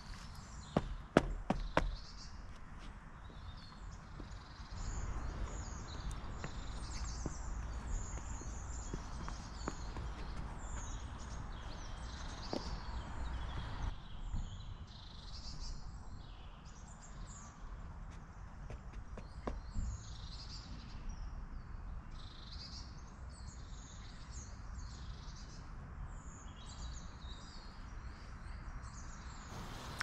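Small songbirds chirping and calling throughout, many short notes overlapping. A few sharp footfalls and knocks sound about a second in, as a person steps up onto a fallen log, and again once or twice later as he walks along it.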